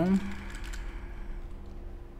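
A short run of computer keyboard keystrokes, a few quick faint clicks in the first second, over a steady low hum.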